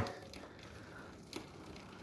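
Very faint freewheel sound of a Novatec D792SB four-pawl rear hub as the wheel spins on, with one faint click about a second and a half in. The ratchet is barely audible because the hub is packed with so much grease.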